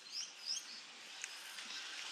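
Faint short squeaks and small taps from a stylus writing on a drawing tablet, over a low background hiss.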